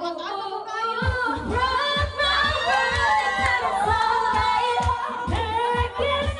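A woman singing into a handheld microphone over a backing track with a steady beat.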